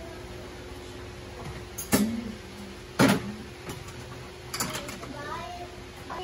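Two sharp knocks about a second apart, each with a short low ring after it, over a faint steady hum; faint voices come in near the end.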